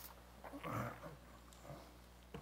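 A man's low, brief throat-clearing sound about half a second in, with a fainter one shortly after.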